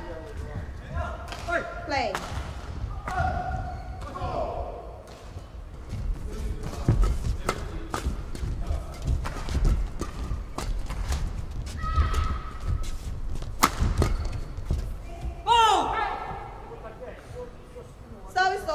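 Badminton doubles rally: a run of sharp racket strikes on the shuttle and thuds of footwork on the court, coming quickly for about ten seconds in the middle.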